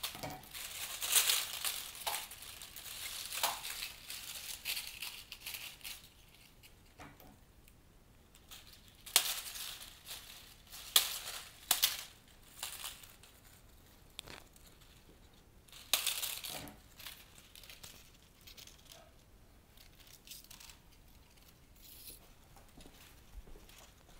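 Dry, papery seed capsules and twigs of golden rain tree branches rustling and crinkling as they are handled and worked into the arrangement, in irregular bursts with quieter gaps between.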